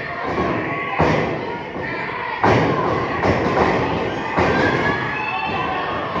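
Heavy thuds of wrestlers' bodies hitting a wrestling ring, four of them, the loudest about two and a half seconds in, over crowd voices.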